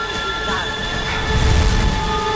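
Strong gusting storm wind: a steady, train-like rumble with sustained high tones over it, the low rumble swelling about a second and a half in.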